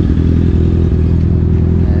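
Motorcycle engine idling steadily close by, an even low hum with no revving.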